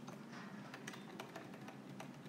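Faint, irregular clicks of typing on an iPad's on-screen keyboard, here deleting letters.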